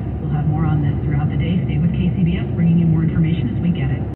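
A person's voice from the car radio, talking steadily over the road and engine noise inside a moving car's cabin.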